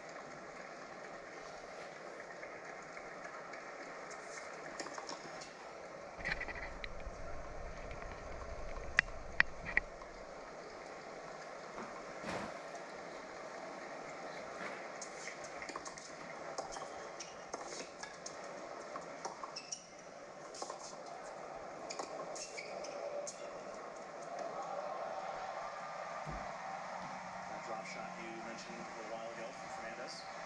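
Faint television tennis commentary in the background, with scattered clicks and clinks of metal being handled at a racket-stringing machine. Three sharp clicks come in quick succession about nine seconds in, and another comes a few seconds later.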